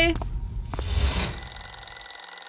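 Alarm clock bell ringing steadily, starting about a second in.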